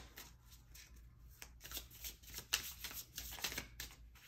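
A tarot deck being shuffled by hand: a run of faint, irregular card flicks and rustles over a low hum.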